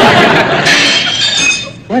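Crystal glassware clinking together, with several high ringing tones that fade out over about a second.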